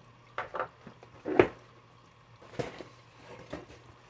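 Handling and opening a packed cardboard box of bagged fishing baits: scattered light knocks and rustles, with one sharper knock about a second and a half in.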